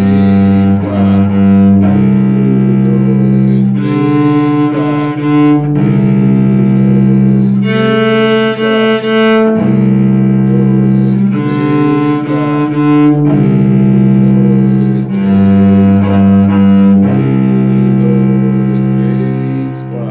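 Cello played with the bow in a slow exercise: a continuous run of sustained notes, changing every one to two seconds and mixing longer and shorter note values.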